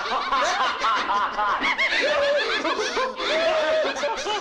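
A man laughing hysterically, in quick bouncing bursts, with more than one laughing voice layered together; the laughter cuts off abruptly just after the end.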